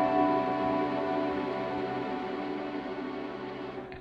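Acoustic guitar played through an amp, its last chord left ringing and slowly dying away, with a faint touch of the strings near the end.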